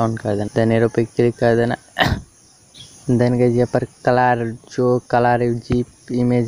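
A man's voice talking throughout, over a faint steady high-pitched whine. A single sharp click comes about two seconds in, followed by a brief pause in the talk.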